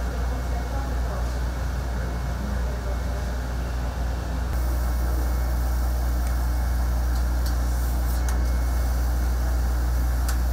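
Steady low machine hum in a workshop. About four and a half seconds in it turns louder and steadier as a laser cutter runs, its head and air-assist line over a plastic sheet, with a few faint ticks near the end.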